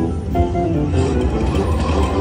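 Huff N' More Puff slot machine playing its free-games bonus music as the reels spin, a run of short melodic notes over a steady low hum.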